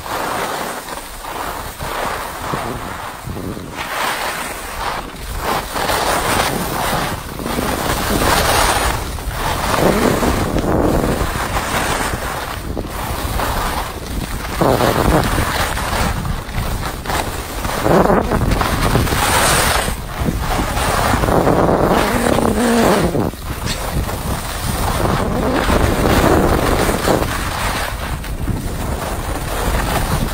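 Wind rushing over the microphone of a skier heading downhill, with the hiss of skis on the snow. The noise swells and falls every second or two and grows louder after the first several seconds.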